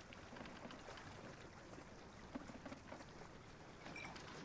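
Near silence: faint open-water ambience around a small wooden boat, with a few faint small knocks about two and a half seconds in.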